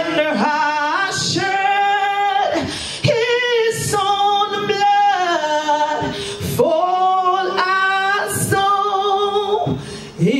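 A woman singing solo into a handheld microphone, amplified, holding several long notes between shorter phrases.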